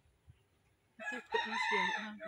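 A rooster crowing: one drawn-out, multi-part call that starts about a second in.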